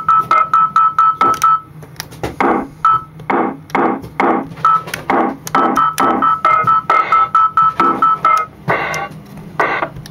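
Circuit-bent Lego electronic toy playing its stored sounds as a fast, looping electronic rhythm of short synth-like notes. A rapid high beep repeats over the rhythm for a couple of seconds near the start and again in the second half.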